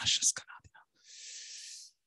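A man's voice trailing off at the end of a phrase with hissing consonants, then about a second of breathy hiss close to the microphone, a breath drawn before he speaks again.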